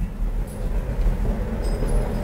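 Steady low rumble of the hall's room noise between announcements, with no clear individual sounds on top.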